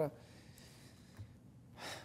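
A pause in a man's speech with low room tone, then one short, audible intake of breath near the end, just before he speaks again.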